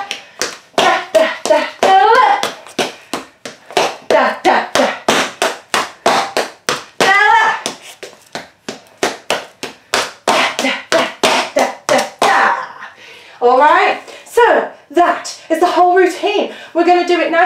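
Metal taps on tap shoes striking a hard floor in a quick, uneven run of clicks as steps such as shuffles, pick-ups and stamps are danced.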